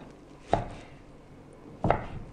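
A kitchen knife cutting raw silverside into chunks and knocking twice on a wooden chopping board, once about half a second in and once near the end.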